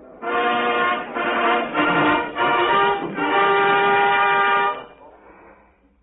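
A short orchestral passage of held chords on an old radio broadcast recording, heralding the king's entrance. The last chord is the longest and fades out near the end.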